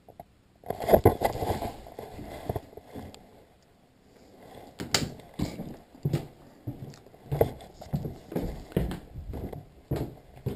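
Footsteps, about two a second, on a wooden hallway floor, with knocks and rustling from a chest-mounted GoPro and its harness as the wearer moves. The handling noise is loudest about a second in.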